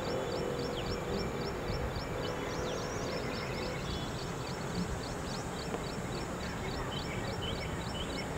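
Open-air ambience: wind noise on the microphone under a bird chirping quickly and steadily, about four short high chirps a second. A faint steady hum sounds through the first half.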